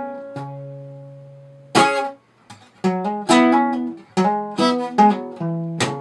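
Acoustic guitar played fingerstyle. A chord rings out and fades, then a sharp percussive slap on the strings comes about two seconds in. A quick lick of hammered-on and pulled-off notes up the neck follows, with another slap near the end.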